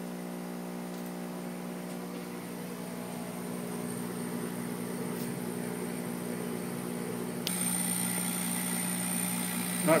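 40-watt laser cutter running a test engrave, with its blower and pumps going: a steady electrical hum made of several even tones. About seven and a half seconds in, the sound steps up abruptly and a high, thin whine joins it.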